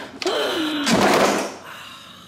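A thunk and a short rustling scrape of a cardboard shipping box being handled, about a second in, after one spoken word.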